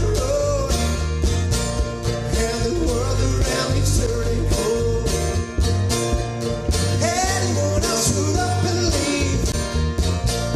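A country song playing, with a steady drum beat, guitars and a voice singing.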